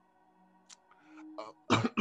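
A man clears his throat with a short, harsh cough near the end, after a second or so of near quiet.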